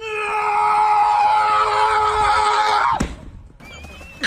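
One long, high-pitched scream held steady for about three seconds, then cut off suddenly.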